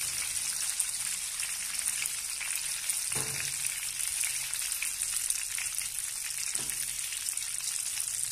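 Banana slices deep-frying in hot oil in a kadhai, a steady dense sizzle and crackle as the still-pale slices cook. A slotted spoon stirs them now and then, with two brief soft knocks, about three seconds in and again near seven seconds.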